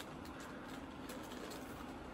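Faint, steady room noise with no distinct sound standing out.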